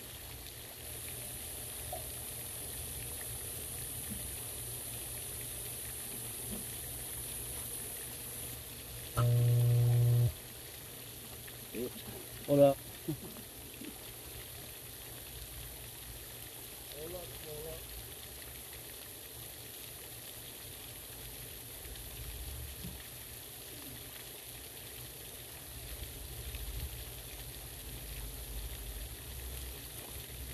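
Steady splashing wash of a pond fountain's spray. A loud flat buzz lasts about a second roughly a third of the way in, followed by a few short chirps.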